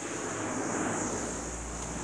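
Steady rushing noise with a low rumble: handling noise on a phone's microphone as the phone is moved about.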